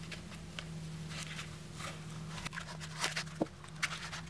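Strips of duct tape being pressed and smoothed onto a foam pool noodle by hand: scattered soft crackling and rubbing, with a few sharper clicks about three seconds in, over a steady low hum.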